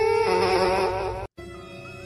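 A loud, steady buzzing tone from a karaoke microphone's built-in speaker, with a sleeping kitten's face pressed against the mic. It cuts off suddenly a little over a second in, and a quieter steady hum follows.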